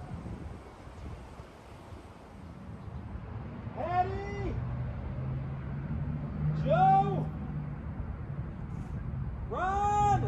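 Three short drawn-out calls about three seconds apart, each rising and then falling in pitch, over a low steady hum.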